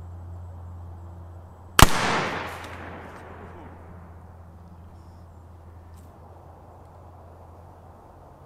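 A single shot from an 1858 Remington cap-and-ball black powder revolver about two seconds in, a sharp crack followed by an echo that dies away over a second or so.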